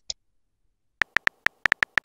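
Keyboard typing clicks of a texting app: a quick run of about eight short taps in the second half, after a brief pop right at the start.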